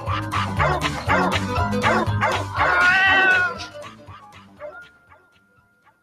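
Music with dogs barking and yipping over it, fading out about four seconds in; a faint steady tone lingers near the end.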